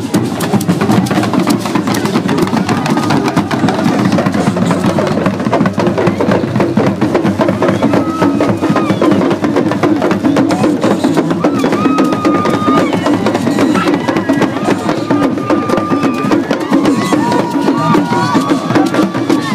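Dagomba drum ensemble playing a dense, driving rhythm on hourglass talking drums (lunsi) and a barrel drum, with the voices of a dancing crowd over it.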